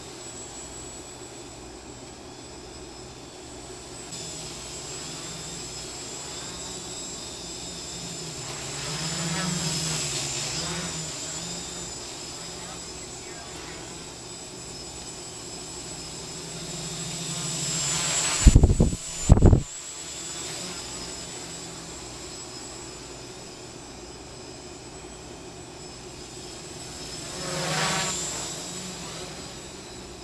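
X525 quadcopter's four brushless motors and propellers running in flight, a steady hum with a high whine that swells twice as the quad comes closer, about a third of the way in and near the end. A little past the middle come two loud low bursts of noise, a moment apart.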